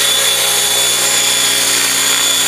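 Electric large-scale RC helicopter hovering, its motor and rotors running at about 85% ESC throttle: a steady high whine over even rotor noise.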